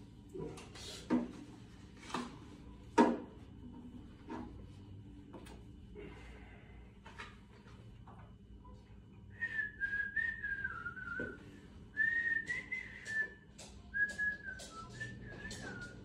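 A few sharp clicks in the first seconds, then a person whistling a tune from about nine seconds in, a string of wavering notes in short phrases.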